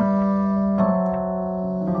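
Rhodes electric piano playing held chords, a new chord struck at the start and another a little under a second in.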